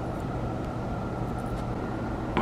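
Steady outdoor background noise: a low rumble with a faint steady high tone above it and no distinct event.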